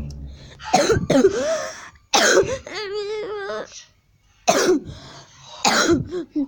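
A girl coughing hard about four times, with a wavering, wobbling vocal sound between the second and third coughs.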